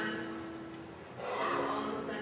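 A single voice at the lectern microphone, holding one sung or chanted note for about a second, then starting a new phrase about a second and a half in.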